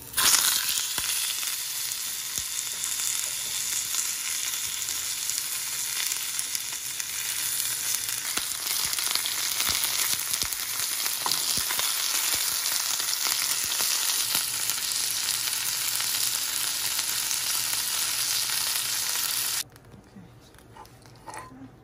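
Whole fish frying in hot oil in a nonstick pan: a loud, steady sizzle with scattered pops that starts suddenly as the fish goes into the oil. It cuts off abruptly near the end.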